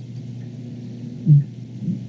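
Steady low hum through the meeting's microphone system during a pause in speech, with one short low voiced sound, a speaker's hesitation, a little over a second in.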